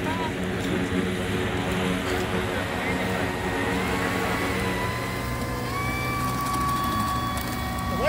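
E-flite Draco RC plane's brushless electric motor and propeller whining at low taxi throttle. The whine steps up in pitch a couple of times in the second half as the throttle is nudged.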